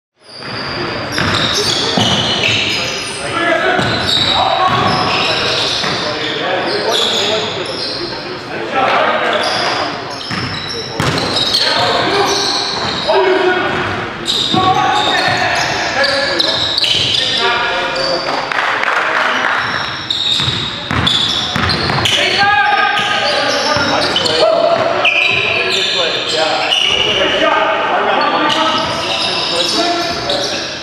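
Game sound of a basketball game on a hardwood gym floor: the ball bouncing, with players' voices calling out indistinctly.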